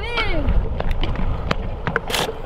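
Scooter wheels rolling over a concrete skatepark surface under a bodyboard deck, a low steady rumble with a few sharp clicks and knocks.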